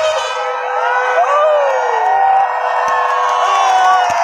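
A large crowd cheering and whooping, many voices rising and falling in pitch over one another, above a long steady held note.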